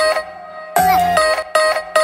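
Background music: a short melodic phrase over a bass line, repeating about every one and a half seconds, with a sliding note in each phrase.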